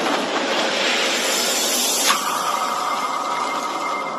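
Logo-intro sound effect: a loud, dense rushing noise, then about halfway a sudden hit after which a steady high ringing tone holds.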